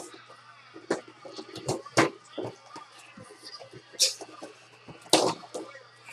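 Packaging being opened by hand to unbox a memorabilia item: a string of short, sharp knocks and clicks with rustling between them, the loudest about two seconds and five seconds in.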